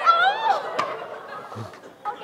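Water bottle rocket, pressurised with a bicycle pump, launching off its stopper as the water rushes out, with the audience exclaiming. A sharp knock comes just under a second in.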